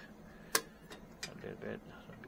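Plastic clicks of a spectrophotometer's specimen holder and black trap being fitted against the aperture for calibration: one sharp click about half a second in, then a few lighter clicks.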